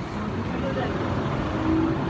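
Garbage truck's engine running, a steady low rumble, with a faint high whine that rises in pitch over the first second and then holds steady.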